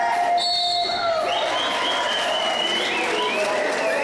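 Referee's whistle blown with a shrill tone about half a second in, over the noise of spectators at an outdoor basketball game. High wavering tones and crowd noise continue after it.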